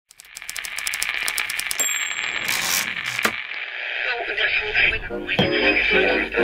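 Crackling hiss with a rapid run of even clicks at first, a short burst of noise and a sharp click around the middle, then a voice and music coming in over the hiss in the second half.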